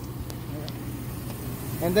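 Jeep SUV's engine idling with the air conditioning on high: a steady low hum.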